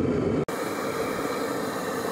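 Forced-air rocket burner firing into a small foundry furnace: a steady, even roar of flame and air after a brief cut about half a second in.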